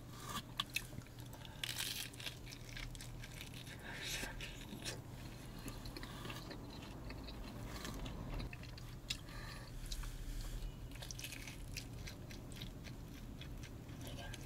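A person chewing a mouthful of pizza with a crunchy crust, with soft crunches and wet mouth sounds coming in irregular small clusters.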